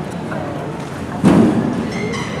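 A single dull thump about a second and a quarter in, over a background murmur of voices.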